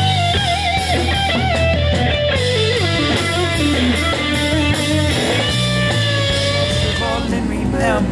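Electric guitar playing a lead melody with string bends and vibrato over a steady low backing, with a run falling in pitch about three seconds in.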